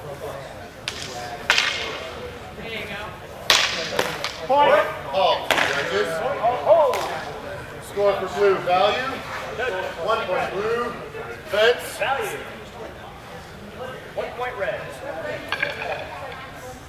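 Nylon longswords cracking sharply against each other in sparring, a scattered series of hard clacks with the loudest about three and a half seconds in, over voices talking.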